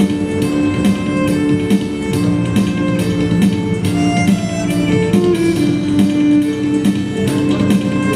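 Electric violin bowing a melody of held, shifting notes over an electronic backing track with a steady beat.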